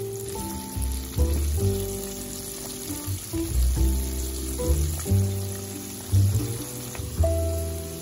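Background music of plucked notes, the loudest sound, over a steady sizzle of battered flounder deep-frying in hot oil.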